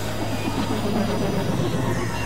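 Dense experimental electronic drone mix: several music tracks layered at once into a noisy wash over a steady low hum, with a rumbling swell in the low end from about half a second in.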